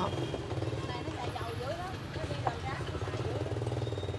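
Street motorbike traffic: a steady low engine hum, with faint voices in the background and a single click about two and a half seconds in.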